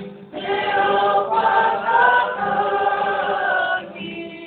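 A choir singing a Māori waiata, coming in strongly about a third of a second in, with a brief dip a little over a second in, and breaking off just before the end.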